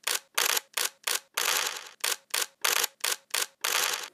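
Outro sound effect over the channel's logo card: about a dozen short, sharp clicks in a quick, uneven run, with no bass.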